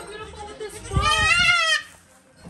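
A goat kid bleating once: a loud, high, wavering cry lasting about a second, starting about a second in.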